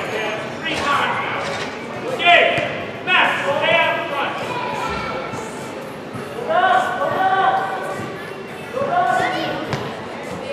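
Indoor soccer play echoing in a large hall: short high-pitched shouts from players and spectators, with thuds of the ball being kicked and knocking against the boards.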